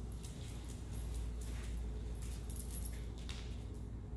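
Dog and handler moving into heel position: faint high jingles of the dog's metal chain collar and a few light clicks and steps, over a steady low room hum.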